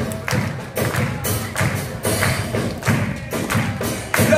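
Uruguayan murga percussion, bass drum (bombo) with snare and cymbal crashes, playing a beat between sung passages, with sharp hits two or three times a second.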